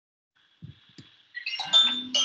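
Two soft keystrokes on a computer keyboard, then, from about a second and a half in, a loud tune of short, bright electronic tones, like a phone ringtone or notification chime, that goes on past the end.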